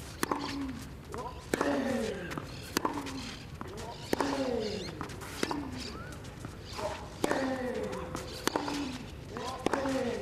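A tennis rally on clay: racket strings hitting the ball about every second and a quarter, about eight shots, with a short grunt falling in pitch from the player on each shot.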